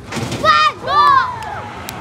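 Riders on a drop tower ride screaming as it falls: a short hiss, then two loud, high-pitched screams that rise and fall, about half a second and a second in.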